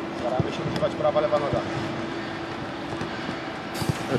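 Open-air pitch ambience: faint distant voices over a steady hum, with a few soft knocks of a football being dribbled on grass.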